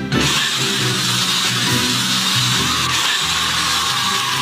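Leafy greens hitting very hot oil in a wok on a gas burner: a loud, even sizzle that starts suddenly just after the start and holds, with the heat high enough that the pan flares up in flame. Background music plays underneath.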